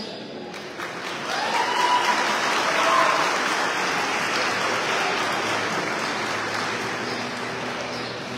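Audience applauding. The clapping starts about half a second in, builds over the next couple of seconds, then slowly tapers off.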